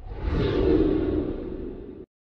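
A whoosh sound effect with a low rumble, as for an animated logo intro, swelling within the first half second, then slowly fading before it cuts off abruptly.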